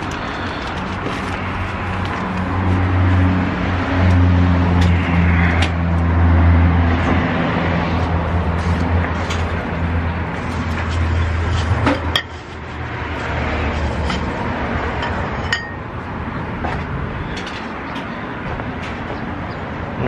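Street traffic with a vehicle's engine hum that builds over the first few seconds and dies away about twelve seconds in, with a few sharp clicks.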